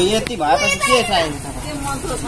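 Voices of people talking, children's voices among them, louder in the first second and fainter toward the end.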